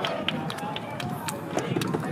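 Outdoor chatter of voices with a scatter of short, sharp clicks.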